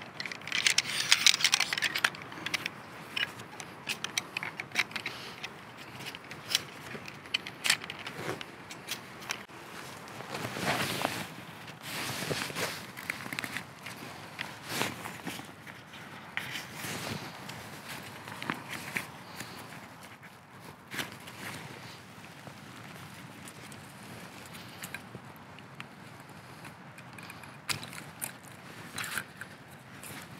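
Handling noise from a folding camp chair being unpacked and put together: nylon fabric rustling, aluminium poles clicking and scraping, and footsteps on dry leaf litter. There are many short clicks and scrapes throughout, busiest in the first couple of seconds.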